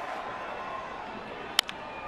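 Steady stadium crowd noise, then about one and a half seconds in a single sharp crack of a wooden bat hitting a baseball, putting it on the ground.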